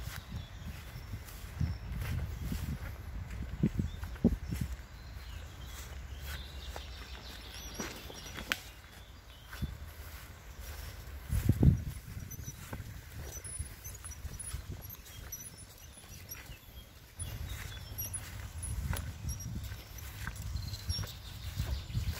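Footsteps through long grass and camera handling: uneven low thuds and rustling, with one louder thump about halfway through. Faint short high chirps sound now and then above them.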